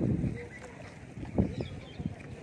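Wind rumbling on the microphone, loudest at the start, with one short gust about one and a half seconds in, under faint voices.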